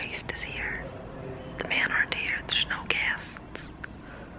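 A woman whispering: a short phrase at the start, then a longer run of words from about a second and a half in.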